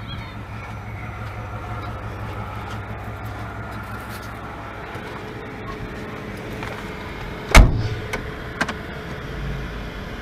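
A van's engine idles steadily while a car door is slammed shut, a single loud bang about three-quarters of the way through, followed by two lighter clicks.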